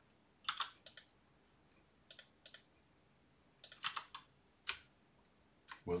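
Faint, scattered clicks of a computer keyboard and mouse, in short groups of one to three clicks about every second.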